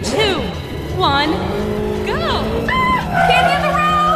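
Video-game style kart-race sound effects over background music: quick sweeping pitch glides, then steady held tones from about three seconds in, as the race gets under way.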